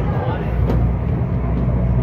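Steady low rumble of a passenger ferry's engine heard inside its cabin, with people talking faintly in the background.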